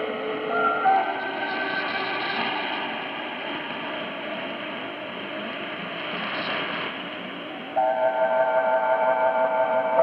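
Music received over shortwave AM radio, thin and band-limited, with a steady hiss of static underneath. Scattered held notes give way, near the end, to a louder sustained chord.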